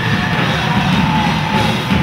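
Live psychedelic rock band playing an instrumental passage: drum kit, electric guitar and keyboards together at a loud, steady level, with a held lead note sustained over the top.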